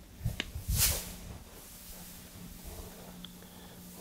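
Soft thumps and rustling as a plyo ball is picked up off artificial turf, loudest just under a second in, over a faint steady low hum of the gym.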